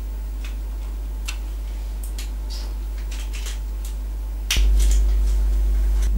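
Steady low electrical hum with faint, scattered light clicks as a metal pastry pincher crimps the edge of puff pastry in a metal pan. A sharp click about four and a half seconds in, after which the hum is louder.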